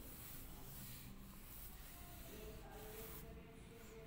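Very quiet, faint hiss as a wet kadai heats on a gas flame and its water steams off, with a faint hum coming in about halfway.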